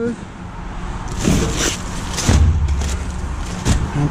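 Flat cardboard mailing boxes rustling and knocking as they are handled, with a sharp knock near the end. A low rumble is heard about two seconds in.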